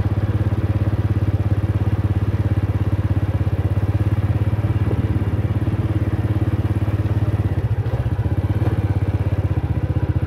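Small motorcycle engine running steadily under way, a fast even chugging hum, with a brief change in the engine note about eight seconds in.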